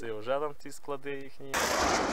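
A man talking in short phrases, then about one and a half seconds in a sudden loud burst of noise that covers every pitch cuts in and holds.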